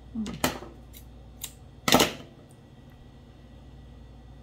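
A person's short wordless vocal sound, a couple of light clicks, then a loud breathy burst about two seconds in, made while fiddling to thread yarn through a darning needle's eye.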